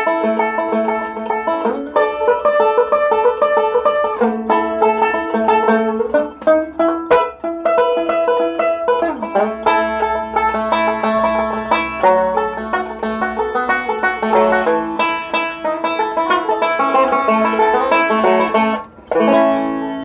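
Five-string banjo played with fingerpicks, a steady stream of bluegrass picking that mixes rolls, licks and vamping as an accompaniment. The playing briefly drops out about a second before the end.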